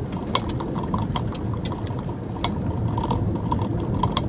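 Steady low engine and road rumble heard from inside a moving vehicle on a wet, rough road, with many irregular sharp clicks and rattles.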